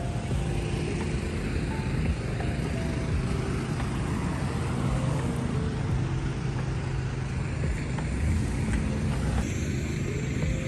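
Street traffic noise: a steady low vehicle engine hum with road noise, under faint background music.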